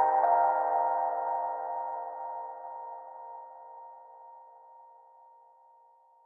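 Closing chord of a slow electronic track: held synthesizer tones ringing out and fading steadily away to near silence.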